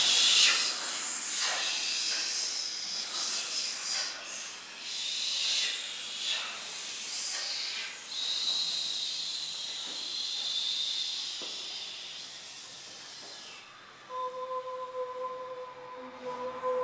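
A group of voices hissing and whispering together, a breathy 'sss' that swells and fades in waves and dies away a little before the end. Near the end a steady held sung note begins.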